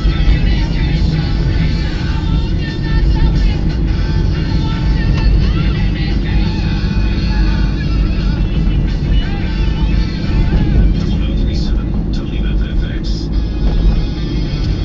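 Steady road and engine rumble inside a moving car's cabin, with music and a singing voice playing over it.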